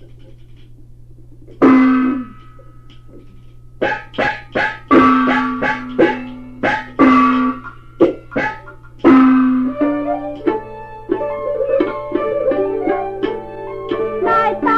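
Taiwanese opera (gezaixi) instrumental accompaniment from an old radio recording: after a brief pause with only a low hum, a string of sharp percussion strikes that ring on, coming quicker from about four seconds in, then a busier plucked-string melody in the last few seconds leading into the next sung passage.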